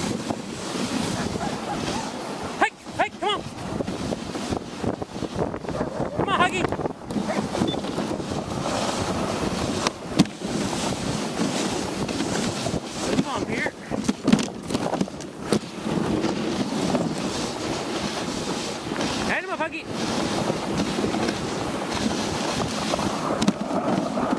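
Dog sled under way on snow: a steady rushing scrape of the runners over the snow, with wind buffeting the microphone. Brief high cries break in a few times.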